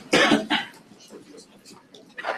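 A person coughing: a short, rough double cough right at the start, followed by a few faint clicks.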